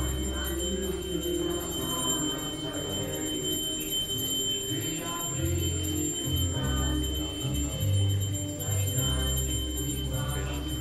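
Devotional kirtan music with a low sustained drone that shifts in pitch and steady ringing from metal percussion.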